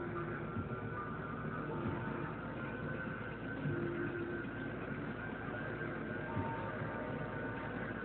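Film trailer soundtrack playing at an even level with no dialogue: a dense, steady wash of sound with a few faint held tones.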